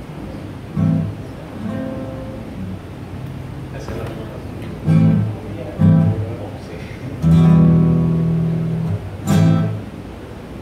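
Acoustic guitar strumming scattered chords, each left to ring, the longest held for nearly two seconds about seven seconds in.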